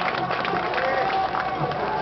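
Crowd noise from a rally audience: a dense patter of clapping with voices mixed in, as a speech ends.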